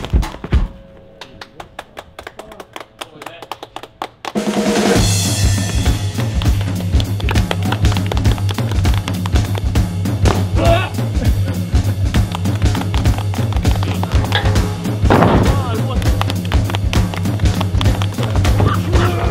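Background music with a drum beat: sparse and quieter for the first few seconds, then a full, loud beat with heavy bass comes in about four seconds in.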